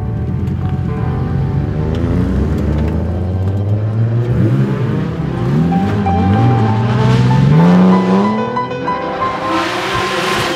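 A drift car's engine revving up and down, its pitch climbing to a peak about eight seconds in and then dropping. Near the end a burst of tyre squeal sets in.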